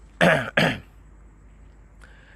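A man clears his throat in two short coughs, a fraction of a second apart, within the first second.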